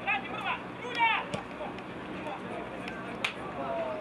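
Short shouted calls from players and coaches on a football pitch, the loudest about a second in, with a single sharp knock a little after three seconds.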